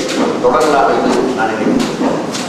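A man speaking Tamil into a lectern microphone: speech only.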